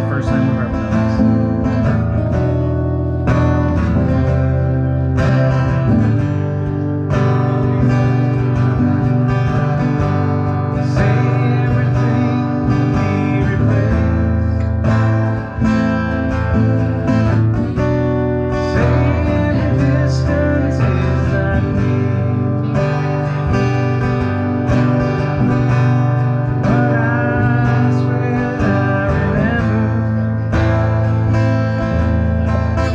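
Two acoustic guitars playing together, steadily strumming chords in a country-style song.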